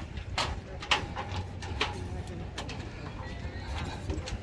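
Footsteps on the metal deck of a pedestrian footbridge, a run of irregular sharp clicks over a steady low outdoor rumble.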